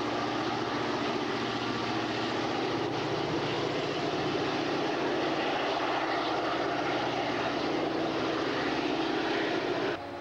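CSX diesel-electric locomotives passing close under power, a loud, steady engine drone with the rumble of the train.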